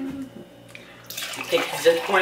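Water poured from a pitcher into a drinking glass. It starts about a second in with a splashing stream that grows louder toward the end.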